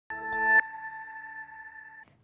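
Short electronic logo sting for a TV news bulletin: a swelling synth chord that cuts off sharply about half a second in, leaving a bright ringing tone that slowly fades away.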